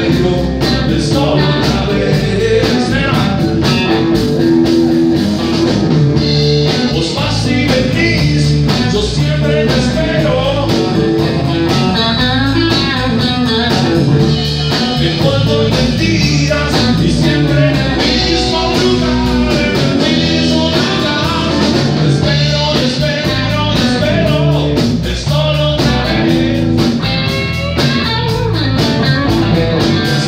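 A live rock trio playing a song: electric guitar, electric bass and a drum kit, with a man singing over them. The band plays steadily and loudly throughout.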